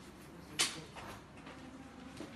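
Needle, thread and stiff cross-stitch canvas handled close to the microphone: one short sharp rasp about half a second in, then a few fainter scrapes.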